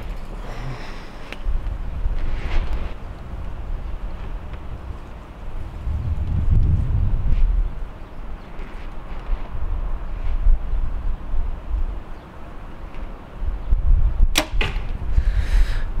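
PSE EVO NXT 33 compound bow held at full draw and then shot once about fourteen seconds in: a single sharp string snap as the arrow is released. A low wind rumble on the microphone runs underneath.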